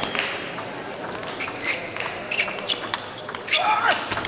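Table tennis rally: the celluloid ball clicking sharply off the bats and the table in an irregular string of hits, starting about a second in, over a background murmur of voices.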